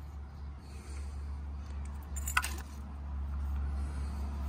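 A single light click about halfway through, from headlight bulbs being handled, over a steady low rumble.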